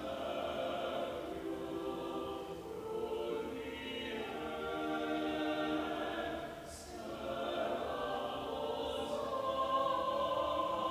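A small church choir singing slow, sustained lines, with a couple of sharp 's' sounds from the words near the end.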